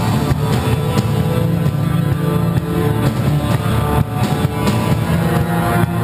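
Heavy metal band playing live: distorted electric guitars, bass and drum kit driving a steady instrumental riff, with no vocals yet.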